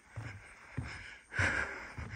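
A person breathing, with a breath about a second and a half in, over soft footfalls on a wooden boardwalk, about one every two-thirds of a second.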